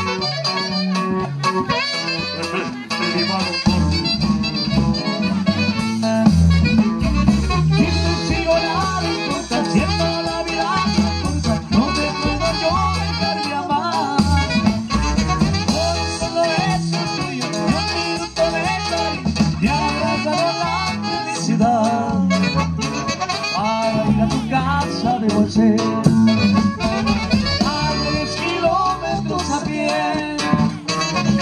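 Live regional Mexican band playing a dance tune, with a steady bass beat under the melody instruments.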